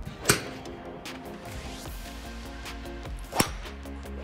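Background music with a steady beat, over which a golf club strikes a ball off a driving-range mat twice: two sharp cracks about three seconds apart, the second from a driver.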